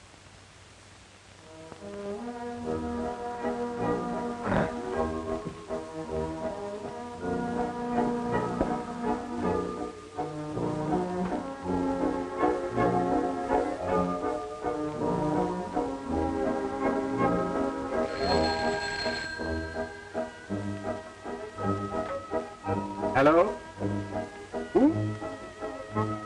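Orchestral music with prominent brass played from a record on a portable phonograph, starting about two seconds in.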